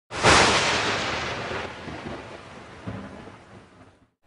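Thunderclap sound effect: a sudden loud crack that rumbles and slowly fades away over about three and a half seconds.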